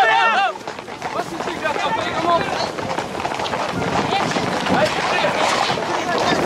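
Crowd of spectators shouting and talking outdoors. A loud, wavering shout breaks off about half a second in, followed by a busier jumble of voices.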